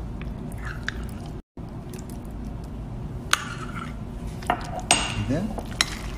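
A spoon stirring farfalle pasta into a thick cheese sauce in a bowl, scraping and knocking against the bowl with a few sharp clinks.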